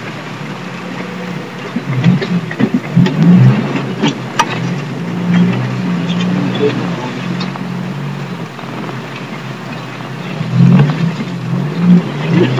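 Car engine running and changing pitch as the vehicle drives over a rough, rutted dirt track, with several sharp knocks and rattles as it goes over bumps.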